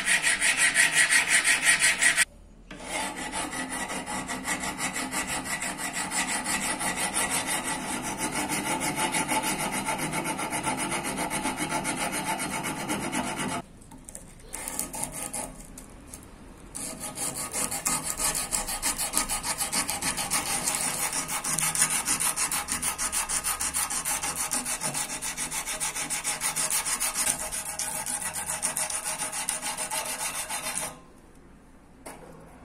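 Hand file scraping over the curved 5160 steel blade of a karambit in quick repeated strokes. There is a short break a little over two seconds in and a quieter lull around the middle.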